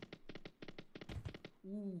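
Madame Destiny Megaways slot game's reel sound effects: a quick run of soft ticks, about eight a second, as the reels spin and land, then a short pitched sound near the end.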